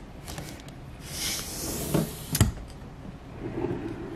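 Hotel room drawers being handled: a soft sliding rustle, then a sharp knock about two and a half seconds in as one drawer is shut and another pulled open.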